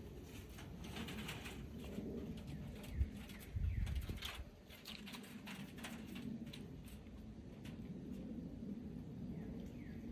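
A dove cooing softly in the background, with a sharp knock about three seconds in and a brief low rumble just after it.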